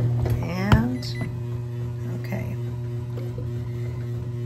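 Bread machine running its kneading cycle: a steady low motor hum with a sharp click about a second in.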